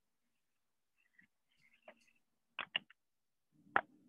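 Near silence broken by a few short clicks about two and a half seconds in and a sharper knock near the end.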